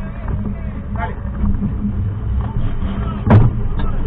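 Off-road race car heard on board, its engine running steadily under load amid knocks and rattles from the rough track, with one loud sharp bang about three seconds in.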